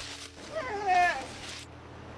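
A sea lion pup calling: one wavering cry that rises and then falls in pitch, lasting under a second.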